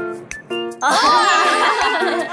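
Edited-in comic sound effects: a few short, steady chime-like dings, then a higher warbling melodic jingle about a second in.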